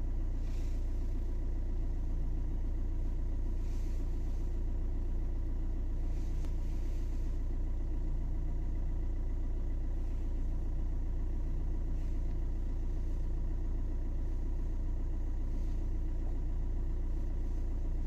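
Steady low rumble inside a car's cabin, the engine idling, with a few faint soft rustles.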